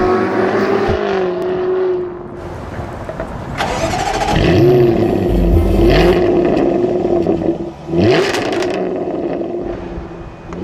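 2014 Jaguar F-Type V8 S's supercharged V8 running while parked and revved in a few quick throttle blips, its pitch rising with each.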